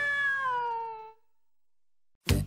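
A drawn-out cartoon cat meow, one long cry that slides gently down in pitch and cuts off about a second in, followed by near silence.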